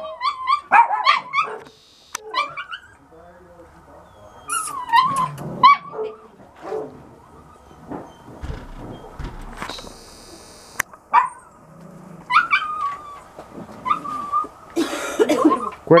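Dog whining and yipping in short, high, wavering bouts a few seconds apart, with a brief rustling noise late on.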